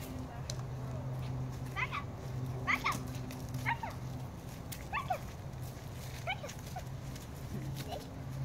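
Dog whining in short cries that fall in pitch, about six of them spread over several seconds.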